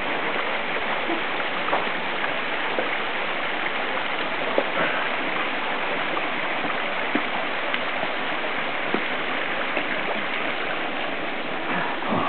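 A creek rushing steadily below the bridge, with a few light knocks from the wooden bridge planks.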